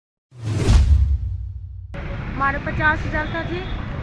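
A whoosh with a deep rumble, a news-bulletin transition effect, coming in suddenly a moment in and fading over about a second and a half. About two seconds in, outdoor street noise starts, with a woman speaking over it.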